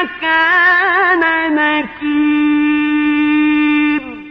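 A man's voice reciting the Quran in the melodic mujawwad style, drawing out a vowel without words: first a wavering ornament, then one long held note that stops near the end and rings on briefly in reverberation.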